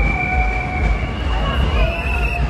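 Whistles blown in a marching crowd: a long, steady, shrill blast held for over a second, then a second one at a slightly higher pitch near the end, over crowd voices and a heavy bass rumble.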